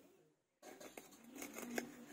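A knife cutting and cleaning small puti fish on a sheet laid on the ground. The sound starts after a brief gap and is a series of faint clicks and short scrapes, with the sharpest click near the end.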